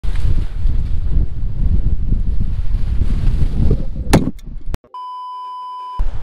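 Strong wind buffeting the microphone, a low rumble, for about four seconds. It breaks off with a couple of sharp clicks, then a steady electronic beep holds for about the last second.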